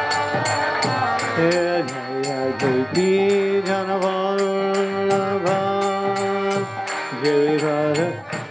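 A man singing a slow devotional chant, holding long level notes with short glides between them, over a steady percussion beat of about three strokes a second.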